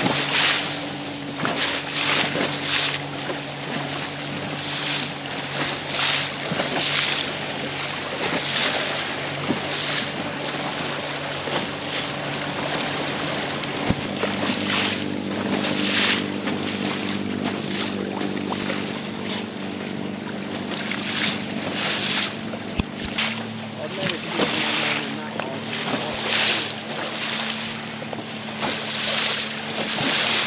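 Engine of a small motorboat running steadily, its note stepping up about halfway through and shifting again later as the throttle changes. Wind buffets the microphone in repeated gusts over the hiss and slap of choppy water.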